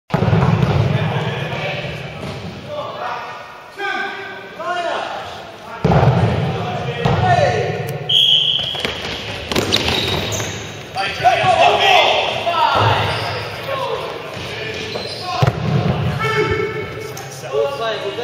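Sports-hall din of a dodgeball game: players shouting and calling, with dodgeballs hitting the floor and walls in sharp slaps. A short, high whistle blast sounds about eight seconds in.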